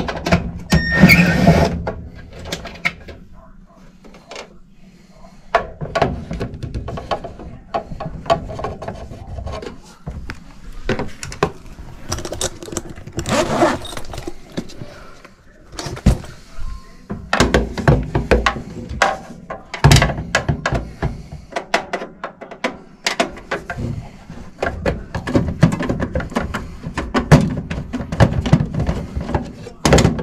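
Hand work on a mobile home gas furnace's inducer draft motor with a cordless screwdriver: many short, uneven clicks and knocks of the tool and metal parts.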